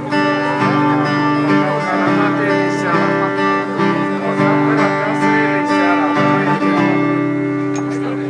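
Acoustic guitar strumming chords: the instrumental opening of a song, with no singing yet.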